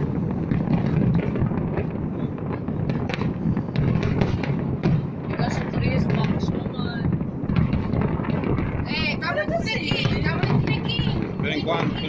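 Large fireworks display going off: a continuous din of many overlapping bangs and crackles, with shrill warbling whistles about three-quarters of the way through and again near the end.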